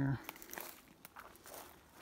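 Footsteps of a person walking on a dry forest floor, several soft steps, after the end of a man's spoken word at the very start.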